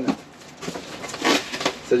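Packaging rustling and crinkling as a hand rummages in an opened cardboard parcel and pulls out a plastic-wrapped item, loudest about halfway through.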